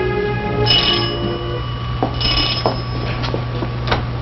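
Background music dies away, then a doorbell rings twice in short bursts about a second and a half apart, followed by a few faint clicks.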